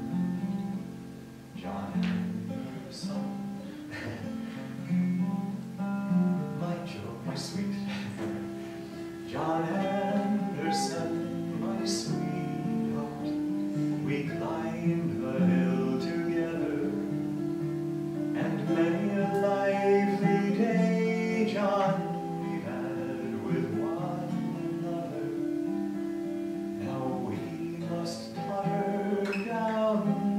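Acoustic guitar being played, a steady run of chords and notes with no break.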